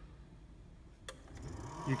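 Eco-King H model boiler firing up to heat the indirect hot-water storage tank, after domestic priority has been switched on. There is a single click about a second in, then a steady hiss comes in and holds.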